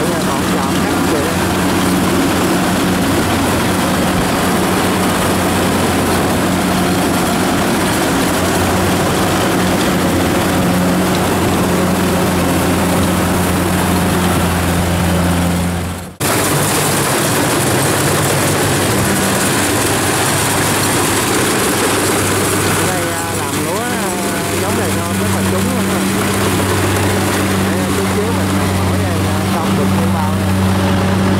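Kubota DC70 combine harvester running steadily while cutting and threshing rice: a constant low engine hum under the rattle and whirr of the machinery. The sound breaks off for an instant about halfway through, then the machine carries on.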